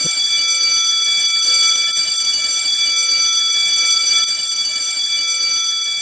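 Electric school bell buzzer sounding in one long, unbroken, high-pitched buzz: the bell for the end of the school day.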